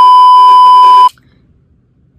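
Loud, steady 1 kHz test-tone beep of a TV colour-bars effect, lasting about a second and cutting off suddenly.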